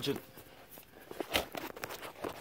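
A single sharp knock about one and a half seconds in, with a few fainter taps after it, over a quiet background.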